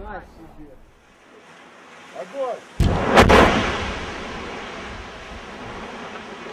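Underwater explosion at sea: a sudden heavy blast about three seconds in, dying away over a second or two into a low rumble.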